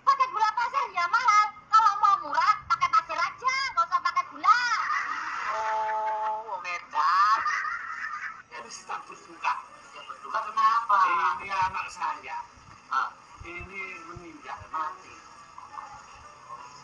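High-pitched, fast-changing voice sounds, like sped-up or pitch-shifted comedy chatter, over music, with one steady held note about five seconds in.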